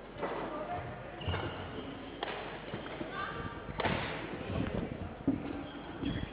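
Sports hall ambience: faint voices echoing in a large hall, with a few sharp knocks and thuds, the clearest about two seconds in and about four seconds in.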